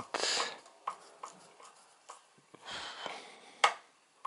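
A few faint clicks and soft rustles from a hand handling a screwdriver, ending in one sharp click shortly before the end.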